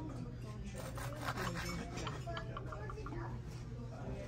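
Knife sawing back and forth through a crusty sourdough loaf on a wooden bread board, the crust crackling in short repeated rasps.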